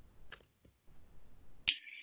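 A few faint clicks, then a sharper click with a brief hiss near the end.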